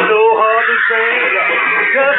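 A male rock-and-roll singer wailing a wordless vocal line, with the band playing behind him.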